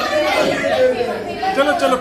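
Several people chattering, their voices overlapping, with no single clear speaker.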